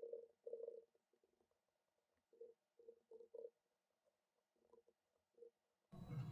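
Near silence: faint room tone with a few soft, muffled blips scattered through it.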